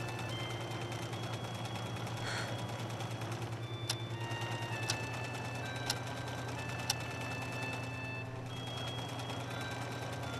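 A wall clock ticking, four sharp ticks one second apart in the middle, over sparse soft high music notes and a steady low hum.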